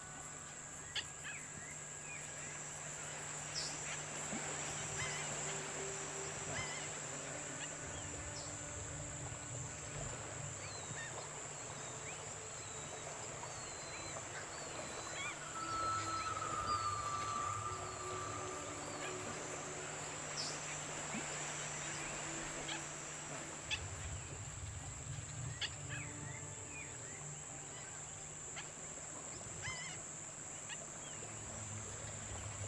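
Outdoor wetland ambience: a steady high-pitched insect drone with scattered short bird chirps and small falling whistles, and one longer call about halfway through.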